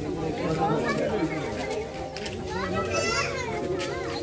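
A crowd of people talking and calling out at once, many voices overlapping, with children's high-pitched shouts among them, strongest about three seconds in.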